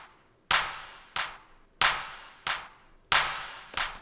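A sampled drum-machine hand clap playing in a loop through a plate reverb, hitting about every two-thirds of a second. Louder and softer hits alternate, and each rings out in a reverb tail before the next.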